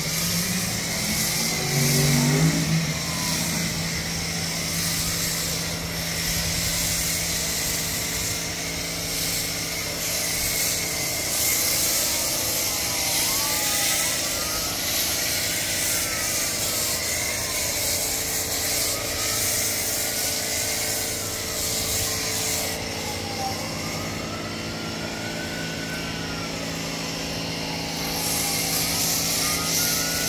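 Pressure washer running and spraying through a foam cannon: a steady motor hum under the hiss of the spray, which eases for a few seconds past the middle. A wailing tone rises and falls repeatedly in the second half.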